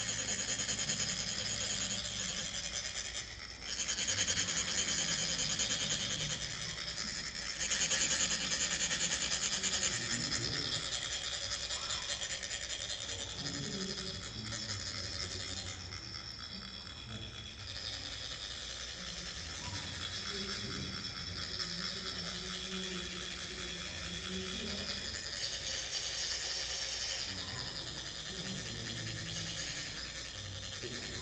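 Several chak-pur, ridged metal funnels of coloured sand, scraped with metal rods to trickle sand onto a Tibetan sand mandala. It is a fast, fine, continuous scraping that is loudest in the first ten seconds and eases off later.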